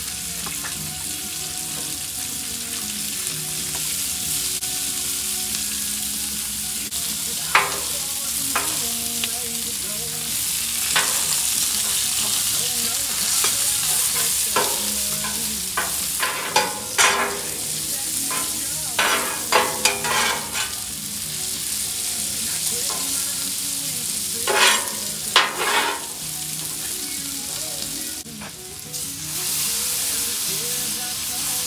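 Onions frying on a hot Blackstone steel griddle, a steady loud sizzle. Through the middle stretch, a metal bench scraper clacks and scrapes against the steel plate as it turns the onions. The sizzle dips briefly near the end, then grows louder again.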